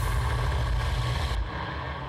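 Low rumbling whoosh sound effect of a TV channel's end-of-commercial-break ident. Its hiss cuts off about one and a half seconds in, leaving a deep rumble that fades.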